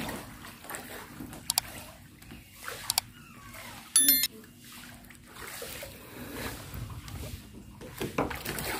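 Shallow floodwater sloshing and splashing around a wader and a plastic kayak. The subscribe-button graphic adds two short clicks, then a brief bright chime about four seconds in, which is the loudest sound.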